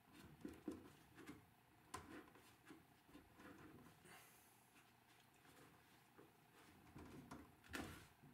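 Near silence with faint handling noises: pliers padded with a cloth working at a wooden door's dowel, giving a few soft clicks and rubs, the clearest one just before the end.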